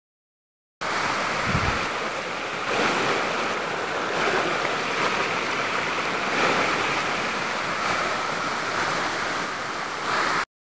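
Steady rush of a small rocky stream tumbling over boulders in white-water cascades, starting just under a second in.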